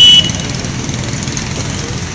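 Road traffic: a vehicle horn sounds briefly at the very start and stops, followed by a steady low rumble of vehicle engines.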